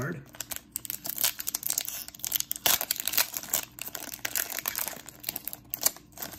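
A 2019 Panini Prizm football trading-card pack wrapper being torn open and crinkled by hand: a quick, uneven run of crackles and rips.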